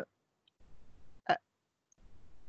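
A pause in a woman's speech over a headset microphone: faint breathing, then one short mouth click about a second in.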